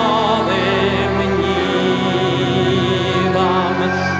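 A slow Belarusian hymn: a male singer holding long notes with vibrato over a steady, sustained instrumental accompaniment.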